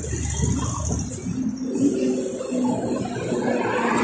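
Street noise of road traffic beside a multi-lane road, picked up by a handheld phone. A low rumble eases off about a second and a half in, leaving a quieter hum with a faint steady tone.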